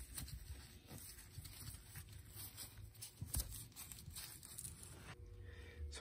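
Faint rustling and scraping of woven exhaust heat wrap being handled and wound around a stainless turbo manifold by gloved hands, with a few light knocks.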